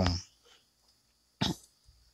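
A single short cough from a man, about one and a half seconds in.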